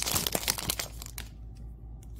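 Foil wrapper of a Topps Bowman Platinum trading-card pack crinkling as it is pulled open, dying down about a second in to a few faint clicks.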